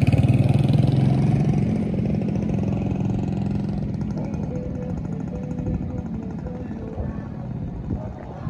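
Motorcycle engine running loud and close, then fading steadily as the bike pulls away down the road.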